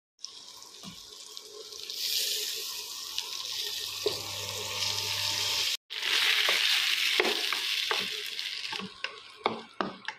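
Sago pearls and boiled potato pieces sizzling as they fry in a steel kadai while a slotted spatula stirs them. The sizzle swells about two seconds in and drops out for a moment near the middle. Near the end it gives way to a few sharp scrapes and knocks of the spatula against the pan.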